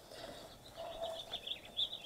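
Songbirds chirping outdoors, a quick run of short, high notes.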